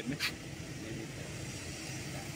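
Steady low background rumble with a faint hum, from outdoor site noise, after a word ends in a brief hiss.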